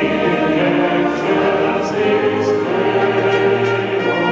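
Large mixed choir singing with a symphonic concert band accompanying, the voices carrying the melody over sustained band chords.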